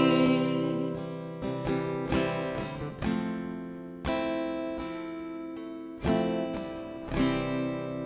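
Acoustic guitar playing the closing chords of a song: a few quick strums and plucks, then single strums spaced a second or two apart, each left to ring and fade away.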